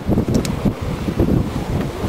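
Wind buffeting the microphone in irregular gusts aboard a sailboat under way in a fresh breeze.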